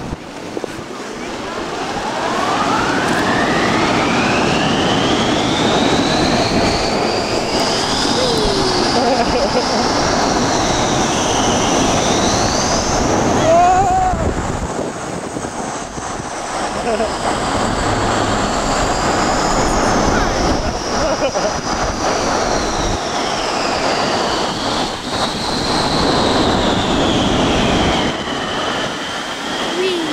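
Snow tube being towed along the snow by a tube-tow lift: a steady rushing noise, over which long whistling tones slowly glide up and down in pitch.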